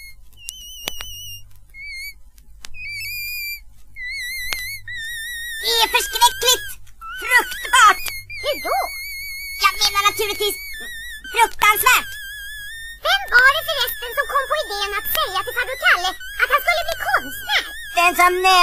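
A thin, high, wavering melody in short notes, then from about six seconds in a chorus of wailing, yowling voices joins in over it: a crowd of cats caterwauling along, as a comedy sound effect.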